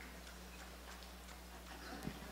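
Quiet hall room tone: a low steady hum with faint, irregular clicks and taps, about three or four a second.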